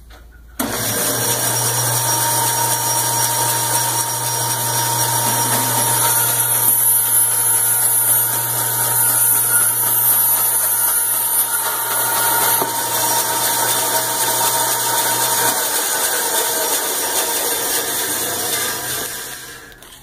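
Forest 230 band saw starting abruptly and running steadily with a low motor hum and a loud hiss while its blade cuts through a cardboard box. Partway through the hiss lessens, and near the end the saw is switched off and runs down.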